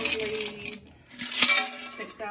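Wood pellets clinking and shifting in a pellet stove's hopper as a hand presses into them.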